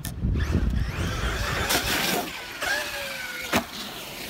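Traxxas X-Maxx 8S brushless electric RC monster truck running over dirt, with tyre and drivetrain noise. Its motor whine falls in pitch about three seconds in, and a sharp knock follows just before the end.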